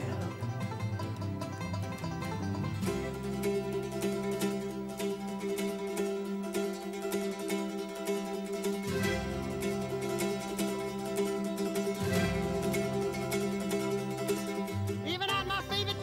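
Mandolin solo of fast picked notes over acoustic guitar accompaniment, with no singing: an instrumental break in a live band performance.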